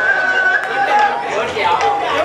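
A man's voice amplified through a PA system, with a held high note in the first half-second, over chatter from the people around.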